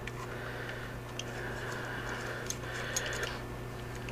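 A few light metallic ticks and clicks as the cap is fitted and threaded back onto a rebuildable vape atomizer, over a steady low hum.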